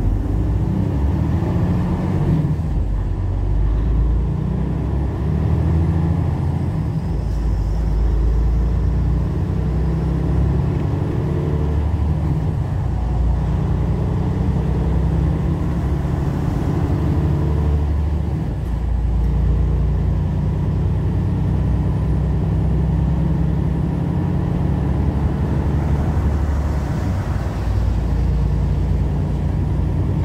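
Heavy truck's engine and road noise heard from inside the cab while driving: a low, steady drone whose pitch shifts several times.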